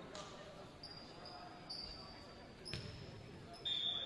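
A volleyball bouncing once on a hardwood gym floor, ringing out in the large hall. A few faint high squeaks come before it, and a brief, louder high steady tone near the end.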